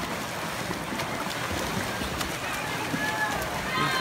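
Swim-race splashing with a steady wash of spectator voices, and a faint shout near the end.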